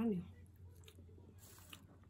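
Faint crunching from a pastry with a crisp base, spooned up from its paper wrapper with a plastic spoon and chewed, with a couple of small crunches in the second half.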